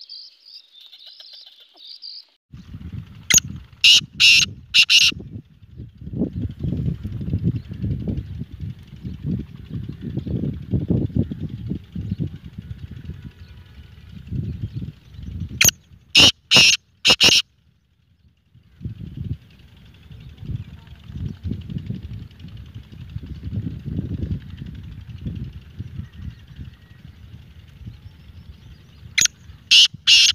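Caged male black francolin calling: three loud, harsh calls of about four sharp notes each, roughly 13 seconds apart, near the start, the middle and the end. A low rumble of wind on the microphone runs underneath between the calls.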